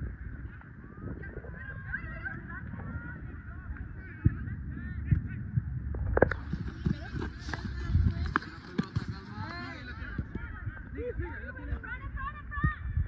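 Birds calling over and over in short curved calls, with several sharp thuds of a soccer ball being kicked and players' footsteps on artificial turf, the loudest thuds a little after the middle.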